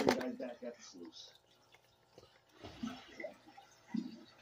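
Water swishing in a blue plastic gold pan as concentrate is swirled to wash off black sand, with a short swish near the end. A sharp knock comes right at the start.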